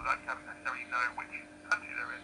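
Single-sideband voice signals from the 40 m amateur band, heard through the small loudspeaker of a homebrew single-conversion superhet receiver. The voices sound thin and narrow, with little bass, in the receiver's low-side VFO injection setting.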